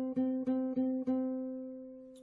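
Nylon-string flamenco guitar plucking one note, the third string stopped at the fifth fret, about five times in quick succession. The last pluck is left to ring and slowly fade.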